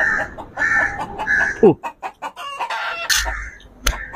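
Domestic hen clucking, short calls repeating about every half second and then more scattered. There is a single sharp clap or tap near the end.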